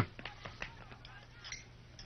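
Quiet low hum with a few faint, short clicks, mostly in the first second.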